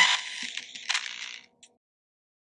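Electronic intro sound effect: a short burst of crackly, hissing noise with a second flare about a second in, cutting off about a second and a half in.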